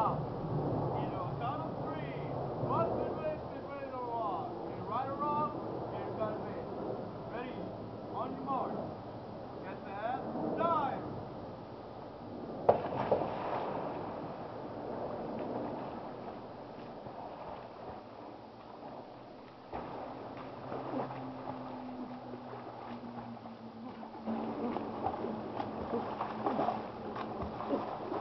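Water splashing and lapping in a backyard swimming pool as swimmers move through it, with faint voices calling out over the first ten seconds or so.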